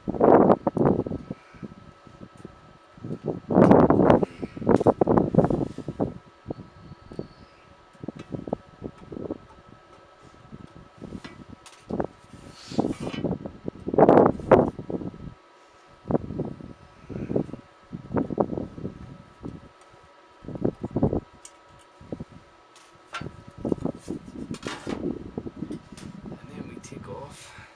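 Irregular knocks, scrapes and rattles of hands removing the side panel from the declination fork arm of a 16-inch Meade LX200GPS telescope, over a faint steady hum.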